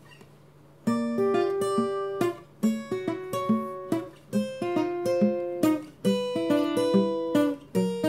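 Instrumental music on a plucked acoustic string instrument, picking single notes and short chords that ring and fade, coming in about a second in after a quiet start.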